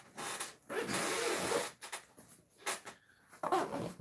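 Zipper on a fabric tackle backpack being pulled open in one rasp about a second long, then a few short rustles and knocks as the bag is handled.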